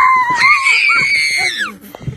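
A young girl screams with excitement while going down a playground slide: one long, high-pitched held scream that falls away shortly before the end.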